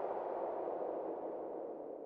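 The tail of the programme's title music dying away after the last beat, a soft reverberant wash that fades slowly toward silence.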